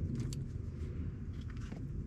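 Light scrapes and a few clicks as a climber on screw-in tree steps shifts his hands and lineman's belt against pine bark, over a low steady rumble.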